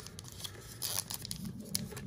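Foil trading-card pack wrapper being handled and torn open, crinkling, with one short burst of tearing about a second in.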